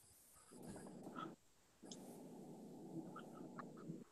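Near silence on a video call: faint low background noise from an open microphone, in two stretches starting about half a second and two seconds in, with a few faint small blips.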